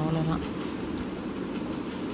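A spoken word trails off, then steady background noise fills a pause in speech.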